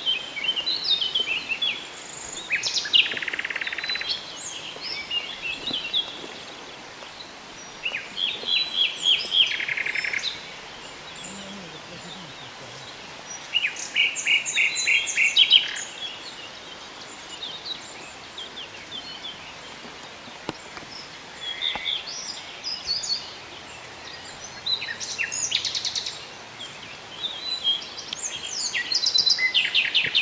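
Wild songbirds singing in short trilled and chirping phrases that come every few seconds, over a steady faint background hiss.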